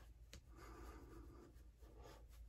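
Faint rubbing strokes of hands on the skin of the face and neck, spreading shave talc after a shave, with one short sharp click about a third of a second in.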